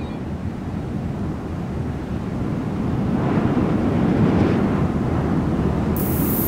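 A steady rush of wind with no tune, slowly swelling louder.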